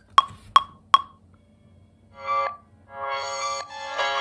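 Metronome count-in from a music production program: three short wood-block-like clicks about 0.4 s apart, then the effect-processed dark sample starts playing. A brief chord a little after two seconds is followed by sustained, layered chords from about three seconds.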